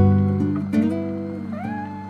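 Slow, soft acoustic guitar music with sustained plucked chords. Near the end a short higher note glides upward and then levels off.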